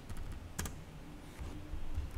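Computer keyboard being typed on: a few separate keystrokes, the sharpest about half a second in.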